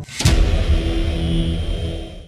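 A sudden loud rumbling roar that starts a moment in and fades near the end: an edited-in sound effect.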